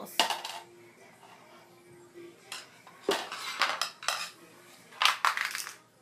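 Metal screwdrivers clattering and clinking against each other as a child rummages them out of a shelf, in three bursts of rattling.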